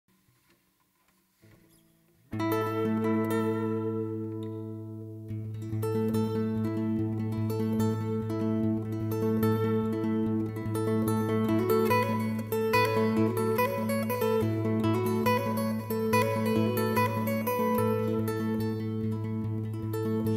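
Acoustic guitar, a 1970s Epiphone El Dorado FT350, playing a song intro: a chord rings out about two seconds in and slowly fades, then a steady picked rhythm with a repeating bass note starts about five seconds in and keeps going.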